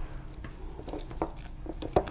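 Damp moss being pulled apart by hand and pressed into a shallow plastic bowl: faint, soft, irregular handling noises.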